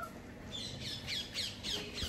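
A bird calling: a quick run of about five short, high calls, each falling in pitch, starting about half a second in.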